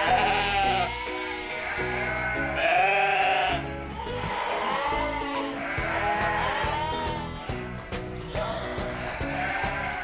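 Sheep bleating several times over background music, with one long, high bleat about three seconds in.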